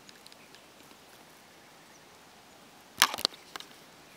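Close handling noise: a sharp knock with a quick burst of clicks and rustling about three seconds in, as a hand reaches for an eel hanging on the fishing line; otherwise a faint, quiet outdoor background.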